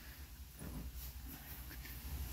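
Quiet room tone with a faint steady low hum; no distinct mechanical sound stands out.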